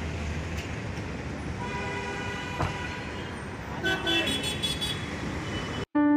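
Street traffic noise with vehicle horns sounding twice, about two seconds in and again around four seconds, each for about a second. The sound cuts off suddenly just before the end.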